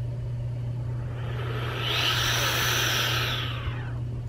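A soft whooshing hiss swells up about a second and a half in and fades away about two seconds later, over a steady low hum.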